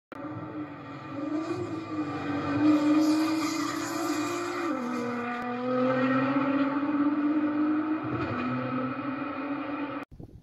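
Sports car engine sound effect in a channel intro, running at high revs: its pitch climbs slightly, drops in a step about five seconds in, and dips again near eight seconds.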